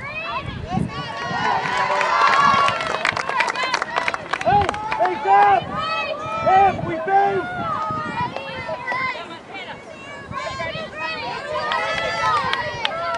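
Several voices shouting and calling across a soccer field during play, overlapping one another, with a few sharp knocks in the first seconds.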